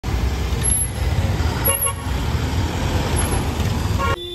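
A bus engine running in busy street traffic, with a short vehicle horn toot a little under two seconds in.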